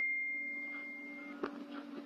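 A single high, pure bell-like tone ringing out and fading away over about a second, after a sharp strike just before, over a steady low hum.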